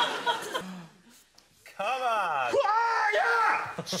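Studio audience laughter fading out within the first second, then after a short lull a man's long wordless vocal wail that slides down and up in pitch, ending in a shouted "Shit!"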